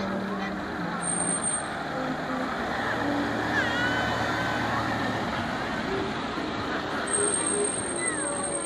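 A car drives past close by around the middle, its engine giving a low hum over the steady chatter of a crowd of adults and children.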